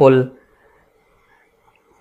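A man's voice says one word, then near silence: faint room tone for the rest.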